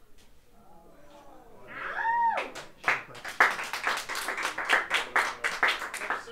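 Audience clapping and cheering after a hush. About two seconds in, one voice whoops with a rising-and-falling call, and the clapping breaks out right after it and runs on thickly.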